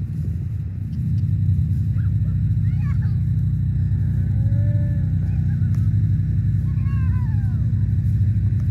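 Cattle mooing: one long, arching moo about halfway through and shorter falling calls near the end, over a steady low rumble.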